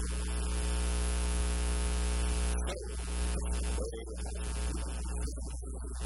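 Loud, steady electrical mains hum with a buzzy stack of overtones running through the recording, dipping briefly a few times.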